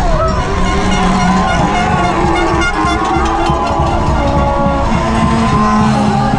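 Downhill mountain bike ridden fast over a rough dirt trail, with wind and ground noise rumbling loudly on the bike-mounted camera. Over it come shouting from spectators along the course and horns blowing steady held tones.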